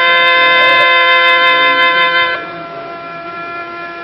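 Alghoza, the Sindhi double flute, playing: one pipe holds a steady drone while the other steps down to a long held note. The melody note stops a little over two seconds in, leaving the drone sounding more softly.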